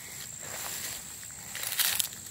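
Footsteps and rustling through tall grass and weeds, with a louder swish near the end, over a faint, steady, high-pitched tone.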